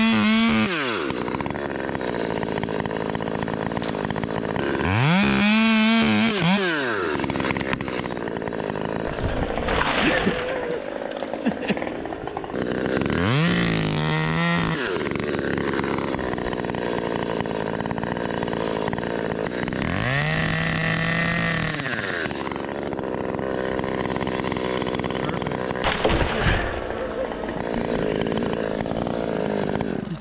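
Top-handle chainsaw cutting limbs of a maple tree: the engine revs up, holds through a cut and falls back to idle, four times over.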